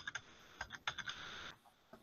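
Faint clicks of a computer keyboard being tapped, a handful of scattered keystrokes over the first second and a half.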